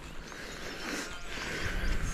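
Faint bleating from a flock of sheep ewes and lambs, under a low rumble of wind on the microphone.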